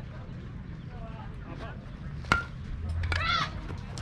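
A baseball bat hits a pitched ball with a sharp crack and a short metallic ping about halfway through. A high-pitched shout from the crowd follows right after, over scattered voices.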